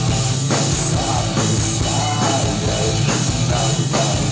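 Live rock band playing loud through a concert PA: drums and electric guitar, with a male vocal sung into a handheld microphone.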